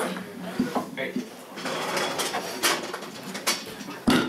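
Handling noise on a handheld microphone as it is carried across the stage: a handful of scattered knocks and rustles, with faint voices in the room behind.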